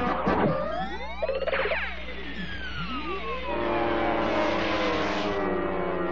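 Cartoon score music with quick swooping glides up and down. Then comes a long falling whistle over a held chord and a rushing hiss, the classic cartoon sound of a fall; the hiss cuts off about five seconds in.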